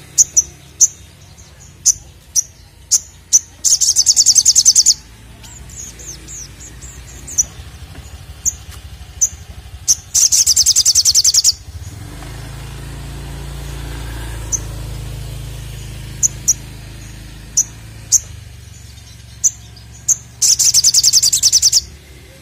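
Olive-backed sunbird calling: sharp, high single chirps scattered throughout, broken three times by loud, very rapid trills of about a second each. A low rumble swells and fades in the background midway.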